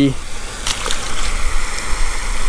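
A released peacock bass splashing back into the pond about a second in, over the steady rumble of wind on the microphone.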